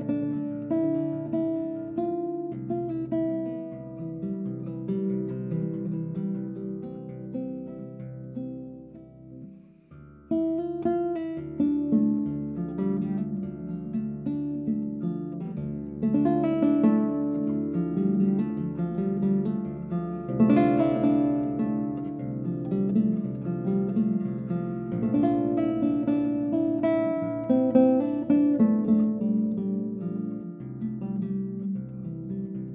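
Solo extended-range classical guitar playing a slow melody in D minor, plucked notes over deep bass strings. The playing dies away to a brief lull about a third of the way in, then comes back in louder.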